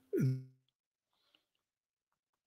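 A man's brief voice sound, falling steeply in pitch, then near silence.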